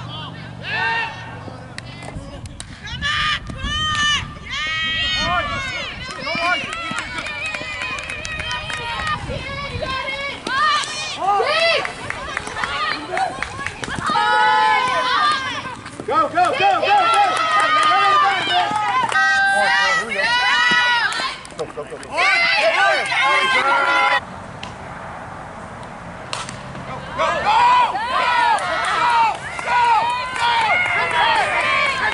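Several people's voices shouting and calling out at outdoor softball games, high-pitched and overlapping, with no clear words. The background changes abruptly several times.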